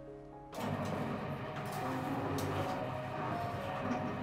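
Benchtop can-sealing (seaming) machine running as it seams the lid onto a filled can, a steady mechanical noise that starts about half a second in.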